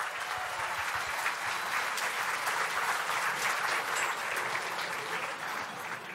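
Banquet audience applauding, a dense patter of many hands clapping that thins out near the end.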